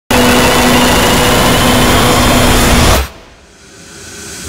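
Loud, dense roaring noise with a few steady hum-like tones running through it. It starts abruptly and cuts off suddenly about three seconds in, then a faint sound swells back up.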